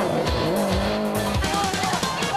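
Music playing over the sound of a Subaru Impreza rally car driven hard at speed.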